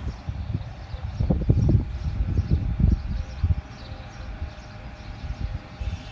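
Wind buffeting the microphone outdoors in irregular gusts, a low rumble that is strongest in the first half and then eases off.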